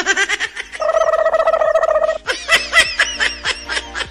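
High-pitched laughter in quick bursts, with one long held note in the middle and then a fast run of short laughs.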